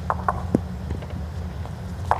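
Steady low hum of an indoor bowls arena, with three short sharp clicks in the first half second or so.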